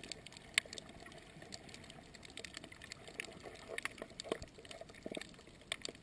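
Underwater sound picked up by a camera held below the surface while snorkeling: a low steady water hiss with scattered irregular clicks and crackles.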